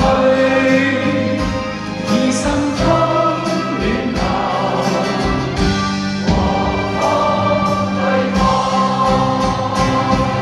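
A pop song performed live: a band plays with a drumbeat while voices sing, sounding like a group singing together.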